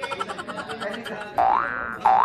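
Cartoon-style comedy sound effect edited into the soundtrack: a rapid rattling patter, then, a little past halfway, a loud springy boing tone that sweeps up in pitch.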